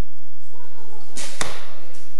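Arrows being shot from bows in a large indoor archery hall: two sharp snaps about a fifth of a second apart, a little over a second in, each followed by a short echo off the hall.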